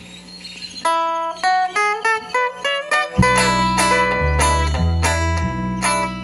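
Live band with acoustic guitars and electronic keyboard playing the introduction of a corrido through a PA: a melody picked out note by note, joined about three seconds in by a bass line and strummed acoustic guitars.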